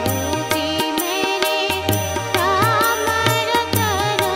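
Indian classical-style music: an ornamented melody with wavering, gliding notes over sustained drone tones, kept by steady hand-drum strokes with deep low thuds.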